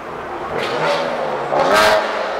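A motor vehicle's engine revving as it passes, growing louder and loudest near the end.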